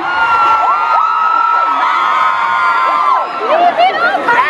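Concert audience screaming and cheering, many high-pitched voices held for about three seconds, breaking up into scattered whoops near the end.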